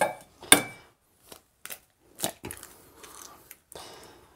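A hen's egg cracked against the rim of a stainless steel bowl: a sharp crack about half a second in and a second one around two seconds in, then faint crackling of shell as the halves are pulled apart.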